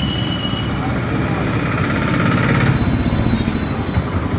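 A motor vehicle's engine running nearby with a steady, low, pulsing rumble in street noise.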